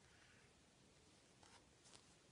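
Near silence, with faint rubbing of a crochet hook working yarn and two soft ticks near the end.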